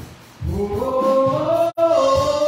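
Gospel singing: a voice climbs and then holds one long note. The sound cuts out for an instant near the end.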